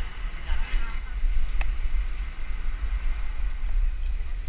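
Wind rumbling and buffeting on a helmet-mounted action camera's microphone while riding a bicycle in a crowd of cyclists, with other riders' voices in the background and a single short click about a second and a half in.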